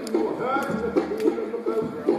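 Hula kahiko chant: one voice chanting in a steady, wavering line, with a few sharp percussion strikes keeping the beat.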